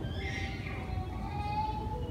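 A pause between a preacher's sentences: the low steady hum of the hall and sound system, with a faint thin tone that rises slightly in pitch through the middle.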